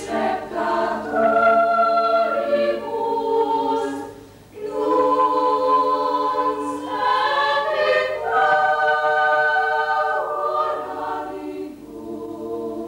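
Youth chamber choir singing a cappella in sustained chords, with a short breath between phrases about four seconds in before the next phrase begins.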